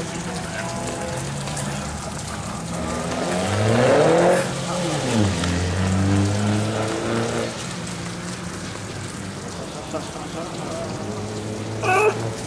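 Mini Cooper rally car's four-cylinder engine pulling hard: its pitch climbs to a loud peak about four seconds in, then drops sharply and settles, fainter as the car draws away. A steady hiss of rain lies underneath.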